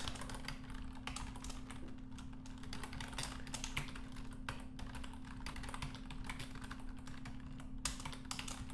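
Typing on a computer keyboard: irregular, quick key clicks, over a steady low hum.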